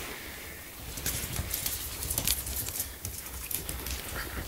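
Dogs' claws clicking and scrabbling on a wooden parquet floor as they play, a quick irregular run of sharp ticks from about a second in, over a low rumble.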